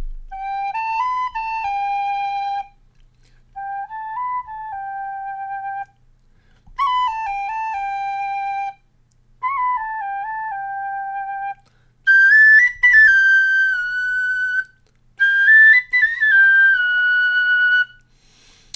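Two tin whistles, a standard one and a Generation Shush quiet practice whistle, played in turn on the same short tune fragments for comparison. The last two phrases climb into the high octave and are the loudest.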